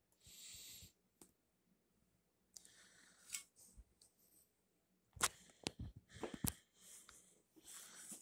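Faint handling noise as a removed small-engine cylinder head and the camera are moved about: short rustles, then a few light clicks about five to six and a half seconds in.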